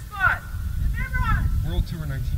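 A few short shouted voice calls, each falling in pitch, over a steady low rumble.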